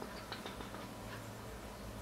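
A few faint clicks of a fingertip tapping and handling a smartphone's touchscreen, mostly in the first half second, over a low steady room hum.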